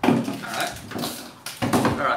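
Kitchen clatter at a metal sink: an emptied plastic sour cream tub and a utensil knocking against the sink, several sharp knocks.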